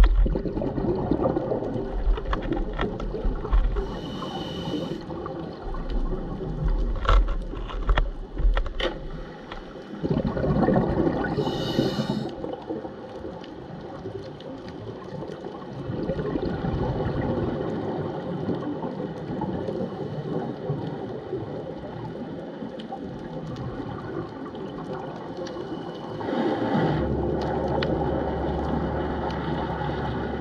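Underwater sound picked up by a camera in its waterproof housing: a low rushing of water with scattered clicks, two short bursts of hissing bubbles at about 4 and 12 seconds, and a swell of louder rushing near the end.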